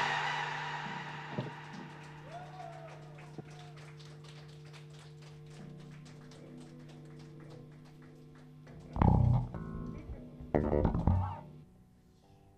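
A live rock band's loud final chord dies away, leaving a low steady drone of held notes and amplifier hum. Near the end come two short, louder bursts of sound.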